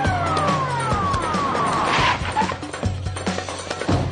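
Police car siren wailing, then falling away in long descending glides over the first second and a half as the car pulls up, over background music with a steady bass beat. A brief rushing burst comes about two seconds in.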